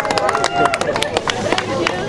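A small crowd clapping in quick, uneven claps, with voices and chatter mixed in.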